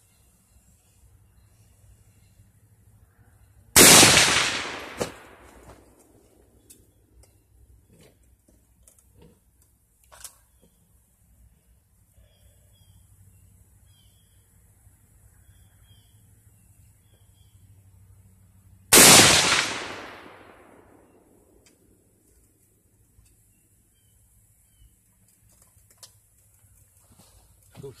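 Two rifle shots from a DPMS Oracle Panther AR-15 in .223, firing 55-grain full metal jacket rounds. They come about fifteen seconds apart, the first about four seconds in. Each is a sharp crack followed by about two seconds of echo dying away.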